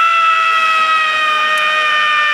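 A woman screaming one long, high note, held steady and sagging slightly in pitch.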